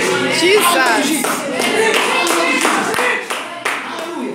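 Hand clapping from a congregation, with excited voices calling out over the claps.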